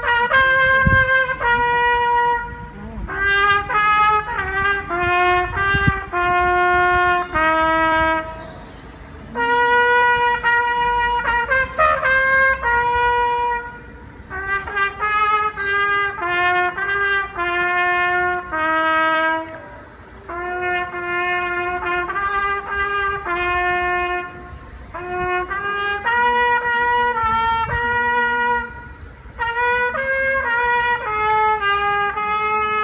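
Solo trumpet playing a slow melody in phrases of a few seconds each, with short breaks for breath between them.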